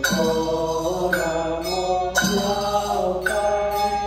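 Buddhist mantra chanting set to music: sustained sung notes that move to a new pitch about once a second, each new note starting with a sharp attack.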